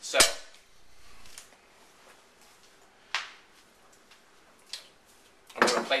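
Kitchen utensils knocking on a wooden chopping board: one loud knock just after the start, then a lighter, sharper knock about three seconds in and a faint one a little later, with quiet between.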